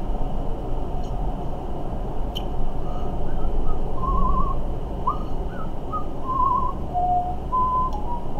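Soft, idle whistling: a few short, wavering notes, some with a quick trill, starting about three seconds in. Under it runs a steady low hum.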